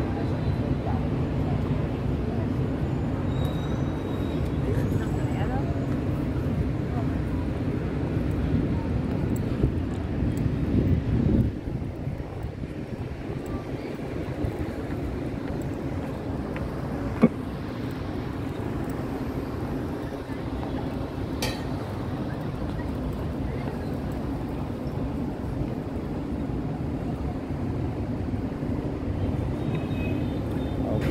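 Steady hum of city street traffic with indistinct voices mixed in. It grows a little quieter about a third of the way through, and a single short click sounds a little past halfway.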